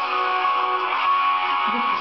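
Instrumental backing music of a pop ballad, led by strummed guitar, playing steadily in a gap between sung lines.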